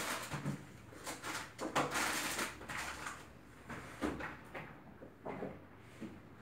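Hand cleaning of a wardrobe: irregular swishes of a cloth wiping its surfaces, with scattered light knocks and clatters of things being handled, loudest about two seconds in.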